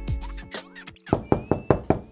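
Background music fading out, then a quick series of about six knocks on a wooden door, about a second in.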